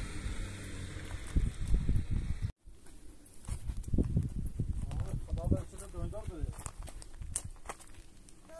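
Footsteps on loose stones and gravel walking down a rocky slope, with a faint voice calling in the middle. A low rumbling noise fills the first two and a half seconds and cuts off suddenly.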